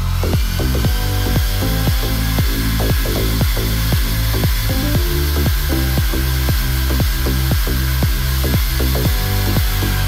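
Background electronic music with a steady beat, over which a power drill whines up to speed at the start and then runs steadily.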